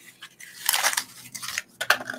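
A small cardboard box being pulled open and handled by hand, with a scraping, crinkly rustle about half a second in and a couple of sharp clicks near the end as the mini bottle comes out.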